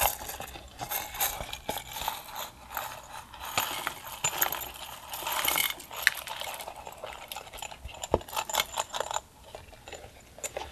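A silicone zip coin purse being handled close up: a loud zip rasp at the start as it is closed, then irregular scratchy rubbing and small clicks from the zip and its metal pull. These die away about nine seconds in.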